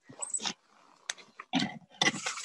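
Short, breathy effort noises and rustling as a woman pushes herself up from kneeling in crunchy snow, with a sharp click about a second in.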